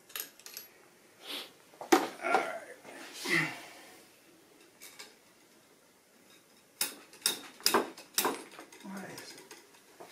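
Sharp metallic clicks and clinks from handling a Hornady OAL gauge in the chamber of a bolt-action rifle. A few taps come in the first two seconds, then a quick run of four or five clinks about seven seconds in.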